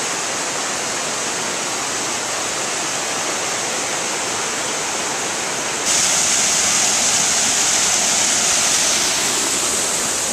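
Stream water rushing over a stone weir, a steady splashing rush. About six seconds in it jumps louder and brighter as a small waterfall pouring into a pool comes close.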